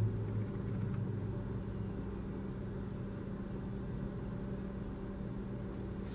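A steady low hum, unchanging throughout, with nothing else standing out.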